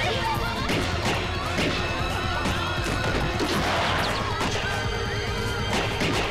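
Film action-scene soundtrack: dramatic background score with several sharp crashing hits and high wavering cries, ending in a revolver gunshot.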